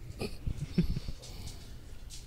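Faint breathing and a few soft clicks close to a microphone, most of them in the first second.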